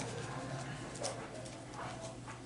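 Quiet room with a steady low hum and a faint murmuring voice, and one short click about a second in.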